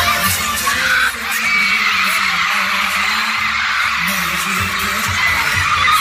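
A K-pop dance track playing loud over an arena sound system, with a crowd of fans screaming over it. The bass beat drops out about a second in and comes back near the end.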